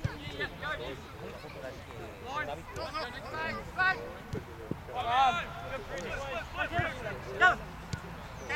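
Players shouting and calling to each other across a football pitch during play, several voices, the loudest calls about five and seven seconds in. A few short thuds sound among the calls.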